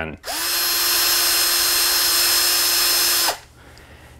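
Milwaukee cordless drill running with no load in its high-speed gear (about 1,420 RPM): a steady motor whine that spins up quickly about a quarter second in. The whine holds for about three seconds, then winds down when the trigger is released.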